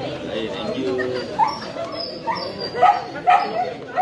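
A dog barking, about five short barks from a second or so in, over the chatter of people's voices.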